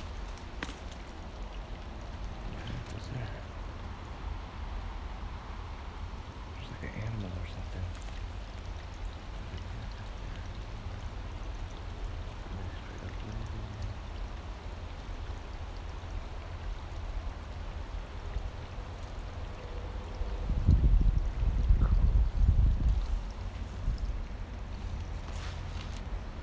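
Outdoor ambience: a steady low rumble of wind on the microphone, swelling louder for a few seconds near the end, with the faint trickle of a tiny creek.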